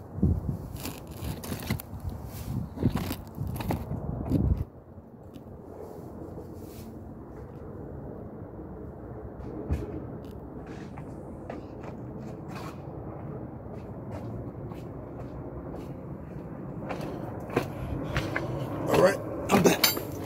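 Handling noises of work: scattered clicks and knocks, heaviest in the first four seconds, then a steady background hiss with the odd click, busier again near the end.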